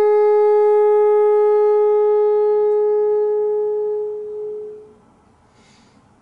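Bassoon holding one long, steady note that fades away about five seconds in, followed by a faint hiss near the end.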